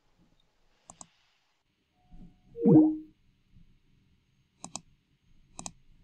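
Computer mouse clicking in quick pairs, about a second in and twice near the end. Around the middle comes a brief, louder sound that slides down in pitch.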